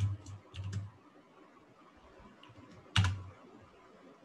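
Computer keyboard keystrokes: a quick cluster of key presses at the start and one louder keystroke about three seconds in, each with a dull thump.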